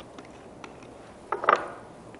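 Screw cap being twisted off a plastic juice bottle: a few faint clicks, then a short burst of louder clicks about one and a half seconds in.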